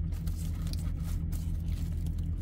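A steady low hum runs underneath, with faint crinkling of paper sandwich wrapper and light handling noise as the sandwich is picked up.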